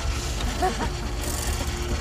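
Hand-cranked cream separator running with a steady mechanical hum as it spins cream out of whole milk, with faint voices in the background.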